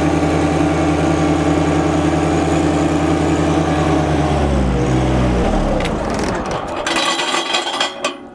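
John Deere 1025R compact tractor's three-cylinder diesel engine running steadily under throttle; about halfway through, its pitch falls as it slows down. Near the end it gives way to a brief clattering noise.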